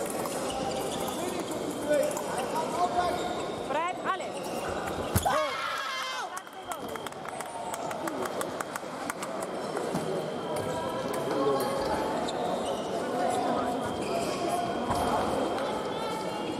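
Sabre fencers' shoes squeaking on the piste, a sharp knock about five seconds in, then a quick run of clicks as the blades meet, over a background of hall chatter.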